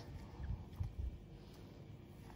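Quiet handling sounds from washing a silicone baby doll in a stainless-steel sink of soapy water: faint, irregular low thuds and soft water movement as hands rub the wet doll.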